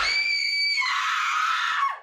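A person's long, high-pitched scream that drops lower about a second in and slides down as it cuts off at the end.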